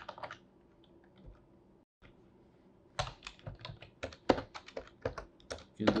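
Typing on a computer keyboard: a few keystrokes at the start, a pause of about two and a half seconds, then a run of quick, irregular keystrokes from about three seconds in.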